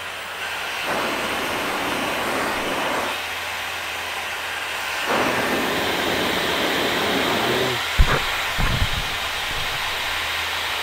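Dyson Supersonic hair dryer running, a steady rushing hiss of air that steps up about a second in, drops back about three seconds in and rises again about five seconds in as its speed and heat buttons are pressed. A sharp thump and a few low rumbles come about eight seconds in.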